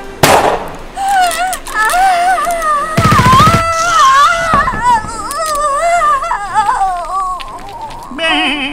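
A loud gunshot crack right at the start, then a high, wavering wordless melody with vibrato that runs for several seconds as a musical interlude. About three seconds in, a rapid burst of gunfire rattles under the melody.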